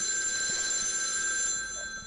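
A telephone bell ringing, a recorded ring played by a joke website. It holds steady, then stops about one and a half seconds in and dies away.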